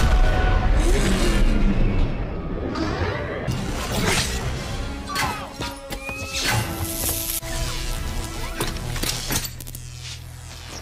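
Action-film sound mix: a heavy crash at the start with a deep rumble, then a run of sharp cracks, crashes and shattering from electrified energy whips striking, over a dramatic orchestral score.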